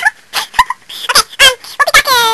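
A person's voice making a string of short, quick, gobble-like warbling vocal noises rather than words.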